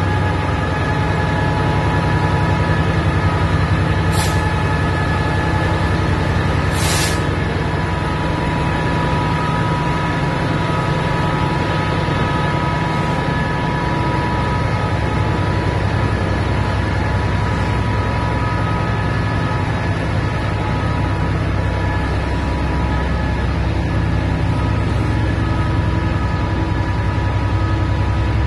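British Rail Class 66 diesel-electric locomotive and its train of container wagons rolling past at close range: a steady low diesel rumble with a steady high whine over it. Two short hisses of air come about 4 and 7 seconds in.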